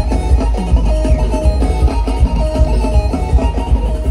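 Live music played loudly through a concert PA, heard from within the crowd, with heavy bass and a short melodic figure that repeats over and over.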